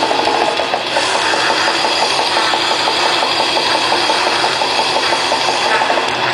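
Grindcore band playing live: distorted electric guitars and fast drumming in a loud, dense, unbroken wall of sound, driven by a rapid, even picking rhythm, with a brief dip about a second in.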